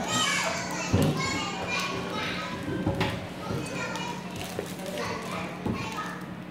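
A little girl talking loudly and excitedly, with a second child's voice, from a home video played back through the room's loudspeakers in a large hall; a steady low hum runs underneath.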